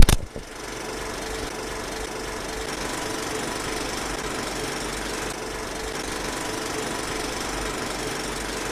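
A sharp click right at the start, then a film projector running steadily, its mechanism ticking over without a break.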